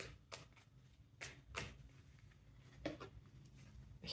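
Tarot deck being shuffled by hand: a few soft, irregularly spaced card slaps and flicks, faint against the room.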